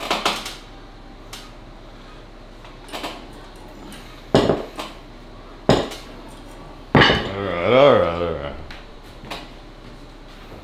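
40 kg of weight plates on a strict back pressure armwrestling machine clanking metal on metal as they are raised and set down over several reps, five sharp knocks in all. Near the end the lifter lets out a strained groan that rises and falls in pitch.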